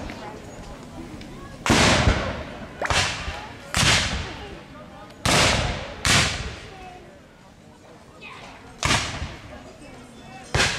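Black-powder muskets firing blank charges in a scattered skirmish: six separate shots at uneven intervals, each a sharp crack with a fading tail.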